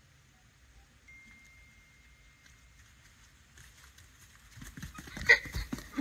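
Horse hooves thudding on soft, muddy paddock ground, starting about four and a half seconds in after a mostly quiet stretch, with one sharp, louder knock near the end.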